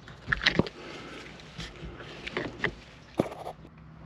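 Handling noise of a liner insert being worked in a car's interior storage compartment: a few light clicks and knocks, scattered and irregular.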